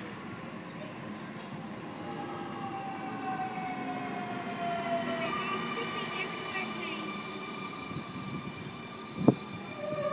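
Sydney Trains Millennium double-deck electric train moving slowly along the platform as it comes in to stop, its traction motors whining in several tones, one of them falling in pitch as it slows. A single sharp knock comes near the end.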